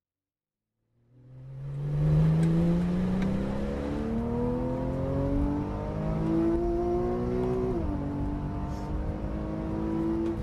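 Porsche 911 Carrera S (991) naturally aspirated flat-six under full throttle, climbing in pitch as the car accelerates, with an upshift dropping the pitch near eight seconds before it climbs on. The sound fades in about a second in.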